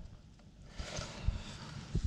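Faint rustling as fingers handle a freshly dug button and rub crumbly clay soil from it, with a few soft low bumps.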